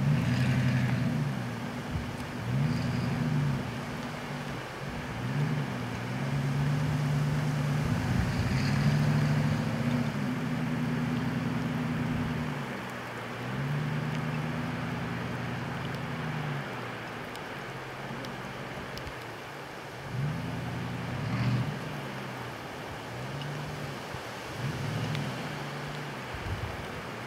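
Lifted Dodge 4x4 mud truck's engine revving up and down over and over, held high for several seconds at a time as the truck spins its tyres, sliding around.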